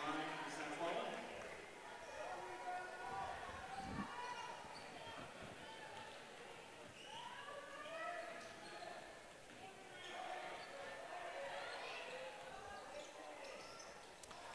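Faint gym sound during basketball play: scattered voices from players and the stands, and a basketball bouncing on the hardwood court, one bounce standing out about four seconds in.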